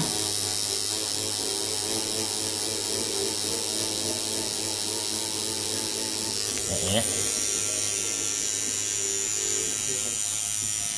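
Electric tattoo machine running with a steady buzz as its needle works black ink into practice skin for a solid fill.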